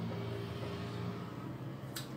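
Quiet background: a steady low hum with a faint hiss, and no other distinct event.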